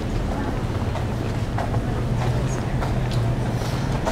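Footsteps of people walking on a concrete sidewalk over a steady low hum of city street noise.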